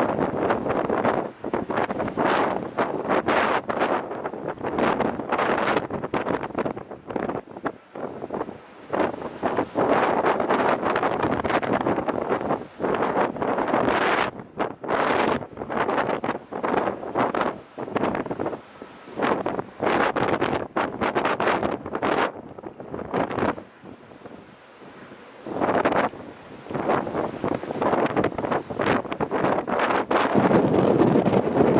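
Strong wind buffeting the microphone in irregular gusts, over the rush of a rough sea.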